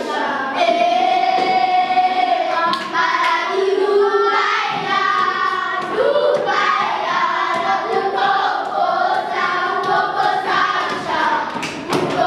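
A group of children singing a song together, with long held notes.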